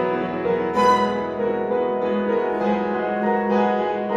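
Live piano trio (violin, cello and piano) playing classical chamber music: sustained bowed string notes over piano, with a sharp accented attack about a second in.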